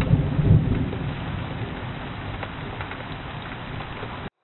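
Steady rain recorded through a trail camera's microphone, with a low rumble that is loudest in the first second and then fades.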